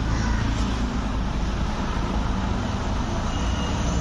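Steady street noise with a low rumble of road traffic.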